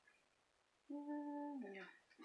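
A woman hums a single held note lasting under a second, starting about a second in, its pitch dropping as it ends; before it there is near silence.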